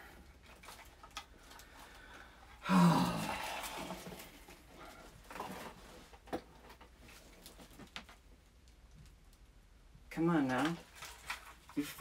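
A man's brief, loud, breathy vocal sound about three seconds in. Faint scattered clicks of handling follow, then a few muttered words near the end.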